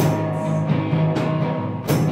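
Live rock band playing: electric and acoustic guitars holding sustained chords over a drum kit, with two sharp hits, one at the start and one near the end.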